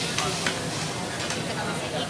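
Busy restaurant din: a steady hiss of background noise with faint voices and a few light clicks of tableware.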